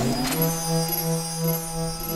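Synthesized electronic drone: a low pitched hum with overtones that starts about half a second in and pulses steadily, swelling two to three times a second.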